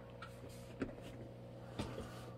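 Ortur Laser Master Pro laser engraver running faintly: a steady hum and thin whine with a couple of soft ticks.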